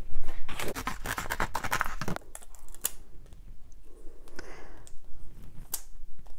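Scissors cutting through a sheet of brushed metallic adhesive vinyl: a quick run of crisp snips and crackles over the first two seconds, then a few scattered clicks.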